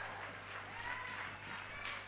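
Faint applause and scattered crowd voices from a small audience.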